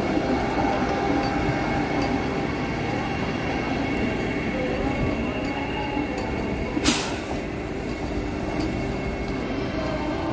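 Vande Bharat Express electric trainset rolling slowly past: a steady rumble of wheels on rail with faint, repeated clicks and a little wheel squeal, and people's voices. A sudden, brief burst of noise about seven seconds in.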